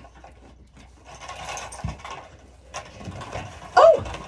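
Rattling clatter as lambs are handled on a livestock weighing scale, in two stretches about a second and three seconds in, with a low thump around two seconds. A short lamb bleat comes just before the end.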